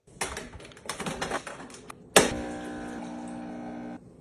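Small clicks and clatters of things being handled on a hard surface, then a sharp clack about two seconds in and a small kitchen appliance starting up with a steady electric hum that cuts off suddenly near the end.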